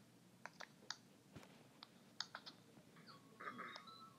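A few faint, scattered clicks in near silence, about eight over two seconds. Faint music starts near the end.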